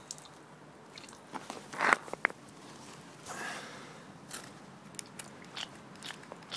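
A pressure washer pump piston pushed by hand, with small clicks, a sharp wet squelch about two seconds in and a short hiss a little later as it sucks water in through its one-way valve.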